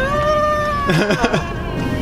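A person's voice holds one long high note for about a second, falling slightly at the end, then breaks into a few short vocal sounds, over background music.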